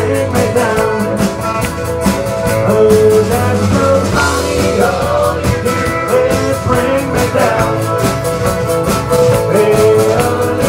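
Live country band playing: strummed acoustic guitars over a steady drum beat, with accordion and fiddle in the band.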